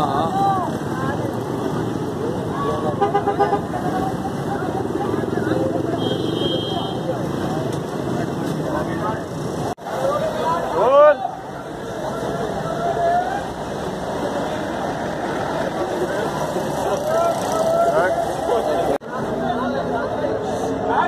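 Busy city street noise: a crowd chattering and talking over passing traffic, with a few short vehicle-horn toots.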